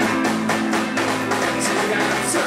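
Live funk-soul band playing an instrumental passage: two electric guitars, electric bass and a drum kit over a steady drum beat.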